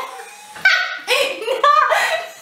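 Two women laughing hard in high-pitched bursts, loudest about half a second in and again near the end.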